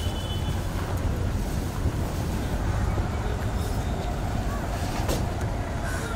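Steady street traffic noise: an even low rumble of passing vehicles, with a short click about five seconds in.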